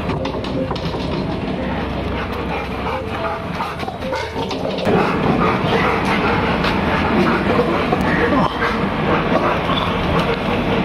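Rottweilers barking at monkeys on a wall, louder from about halfway through.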